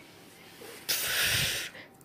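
A short, breathy hiss of air, a single puff a little under a second long about a second in.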